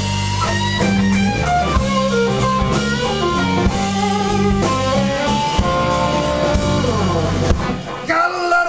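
Live electric blues band playing an instrumental passage: electric guitar lead with bent notes over bass guitar and drum kit, the guitar sliding down in pitch shortly before the end.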